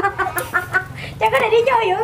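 A group of young people laughing, opening with a quick run of short 'ha-ha' bursts, followed by longer laughing voices.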